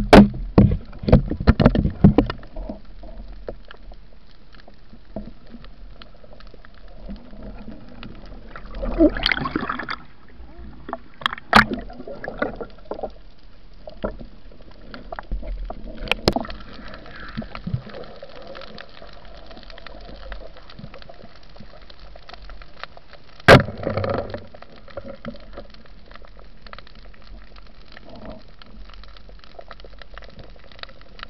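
Underwater sound picked up through a camera housing: a flurry of clicks and knocks at first, then a steady low hum with scattered clicks and short bouts of water gurgling. One sharp, loud crack comes about two-thirds of the way through.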